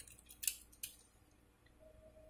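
A few faint clicks and scrapes in the first second as two Hot Wheels Subaru die-cast toy cars are turned over in the hands and pressed together side by side.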